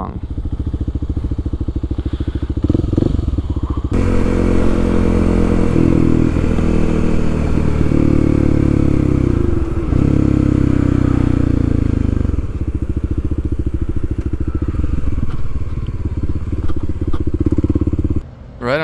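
Kawasaki KLX300 dual-sport's single-cylinder four-stroke engine running under way through an aftermarket stubby stainless muffler. It gets louder about four seconds in as the bike pulls harder, with a brief dip near ten seconds, and settles back to a steadier run near twelve seconds.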